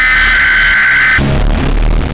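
Heavily distorted electronic warning tone, a steady high beep held for about a second, then cut into a burst of harsh, distorted noise with a heavy low rumble.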